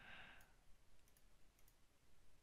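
Near silence with a few faint computer mouse clicks spread through it, after a brief soft hiss of breath at the start.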